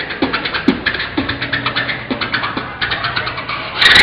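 Beatboxing: a fast, even run of sharp mouth-made hi-hat clicks over deeper kick-like beats about twice a second, with a steady low hum beneath. A louder, brighter burst comes near the end.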